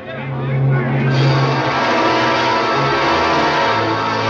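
Dramatic orchestral film score, swelling into a louder, denser sound about a second in.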